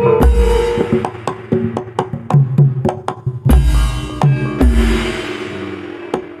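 Live gamelan music accompanying a jaran kepang dance: sharp drum strokes in a quick, even rhythm over ringing metallophone notes. Three heavy low booms land about a quarter second in, at three and a half seconds and just before five seconds.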